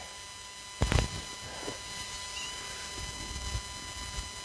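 A single sharp knock about a second in, typical of a hand bumping a phone held outdoors while it zooms, over faint low rumble and a faint steady high-pitched whine.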